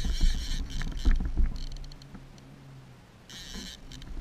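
Fishing reel whirring in short bursts while a hooked king salmon is played on a bent rod. Low rumble and knocks are heaviest in the first second or so, then quieter.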